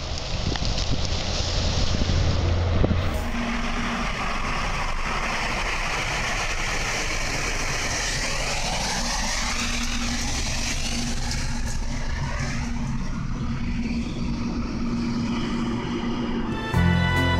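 A train ploughing through deep snow with a low rumble. About three seconds in it gives way to a train passing at speed through a cloud of blown snow: a steady rushing noise with a faint steady hum beneath.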